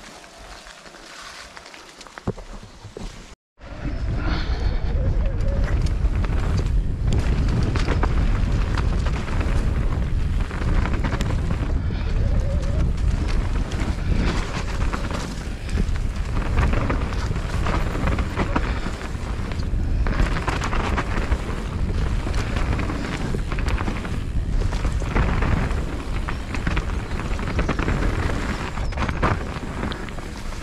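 Wind buffeting a helmet-camera microphone as a mountain bike rides fast down a dirt trail, a loud, heavy low rumble mixed with the rush of the tyres over the ground. It comes in suddenly about three and a half seconds in, after a short dropout and a quieter stretch of slower riding.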